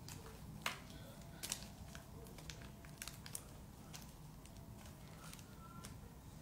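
Handling noise from a phone being moved and set in place: scattered sharp clicks and taps, the loudest about a second in, over a low steady room hum.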